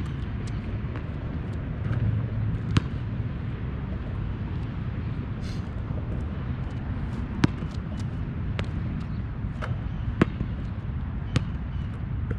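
Basketball bouncing on an asphalt court: a few sharp, single slaps, one about three seconds in and then roughly every second and a half in the second half. Underneath is a steady low rumble.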